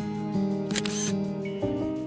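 Soft background music of held, sustained notes that change a couple of times, with a brief noisy click about a second in.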